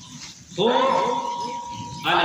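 A man's voice over a microphone and loudspeaker, starting about half a second in and drawn out in one long wavering note, as in chanted recitation, with a steady high tone held alongside it.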